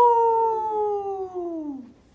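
A man howling like a wolf through cupped hands and a cloth face mask: one long held note that slowly falls in pitch and trails off near the end.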